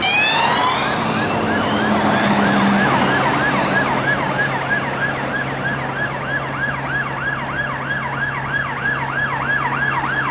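UK police sirens on yelp: a fast rising sweep in the first second, then a quick rising-and-falling warble about three times a second that grows stronger as the vehicles approach. A steady low hum runs underneath from about three seconds in.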